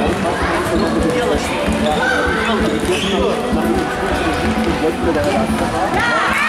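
Indoor football in a sports hall: many voices calling and shouting over one another, with the thuds of the ball being kicked and bouncing on the wooden floor.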